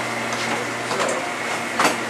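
Commercial kitchen background: a steady machine hum, like ventilation running, with a few light clicks and a sharper clatter near the end.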